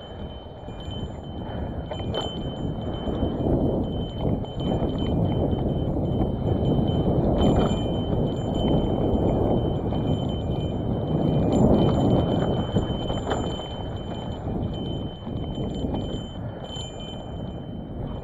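Hardtail bike with skinny tyres rolling fast down a dry dirt trail: a steady rush of tyre and wind noise with the frame and parts rattling and clinking over every bump. It gets louder on the faster stretches, about a third of the way in and again past the middle.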